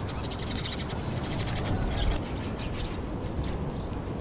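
Birds chirping in quick repeated high notes, thickest in the first two seconds, over a steady low outdoor rumble.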